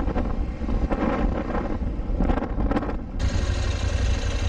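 Riding noise picked up by a motorcycle helmet camera: a loud, steady rumble of wind on the microphone mixed with engine and traffic sound. The sound changes abruptly about three seconds in.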